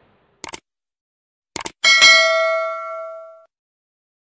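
Two short clicks, then a single bell-like ding about two seconds in that rings with several clear tones and fades out over about a second and a half.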